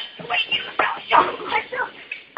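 A person's voice giving several short, high cries one after another.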